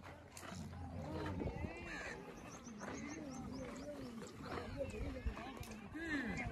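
Dromedary camels groaning: a low, wavering moan that rises and falls in a run of swells through the middle.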